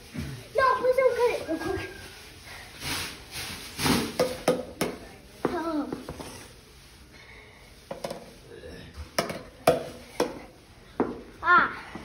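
A ball tapping against a handheld paddle about six times, irregularly, roughly a second apart, as a child tries to keep it bouncing; voices talk in between.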